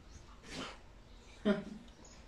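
A dog's single short, breathy puff of breath about half a second in.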